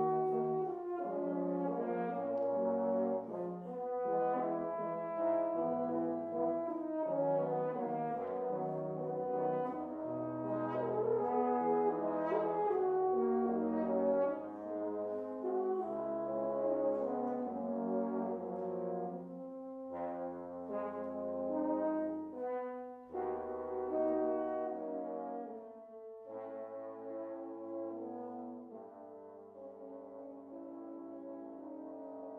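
A quartet of French horns playing together: sustained chords over a moving low line. The playing grows softer in the last few seconds.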